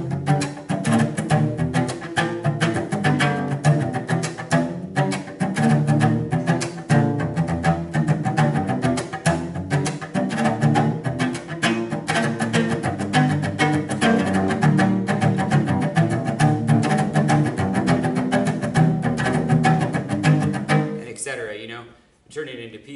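Solo cello played with the bow in a fast, rhythmic jam of chords and single notes, using slides after the notes (bionking). It breaks off briefly about five seconds in and stops suddenly about a second before the end.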